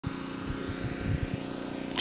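A steady engine drone holding one pitch, with irregular low bumps underneath.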